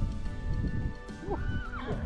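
A horse whinnies once in the second half, a short call that rises and then falls in pitch, over steady background music.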